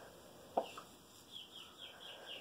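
Chicks peeping faintly: a run of short, high, falling chirps every few tenths of a second, with one soft click about half a second in.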